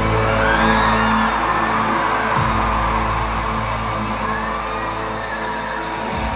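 Live pop concert music played loud over a stadium PA: long held low chords under a sustained, gliding vocal line, recorded on a phone from the stands.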